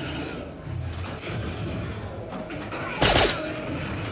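Steady background hubbub in a busy soft-tip dart hall. About three seconds in, an electronic darts machine gives one sudden loud burst with a falling sweep: its hit effect as the checkout dart lands in double 16.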